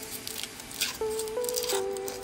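Aluminium foil wrapper crinkling in short crackles as it is peeled off a Kinder Surprise chocolate egg, over background music with long held notes that change about a second in.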